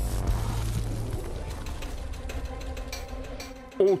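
Broadcast transition sound effect for an animated 'Round 6' title card: a deep bass hit with a wash of high hiss that dies away over a few seconds, with a fine clicking texture in the tail. A man's voice comes in near the end.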